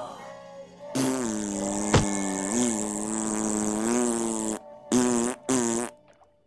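A cartoon character blowing a long, loud raspberry lasting about three and a half seconds, followed by two short raspberries.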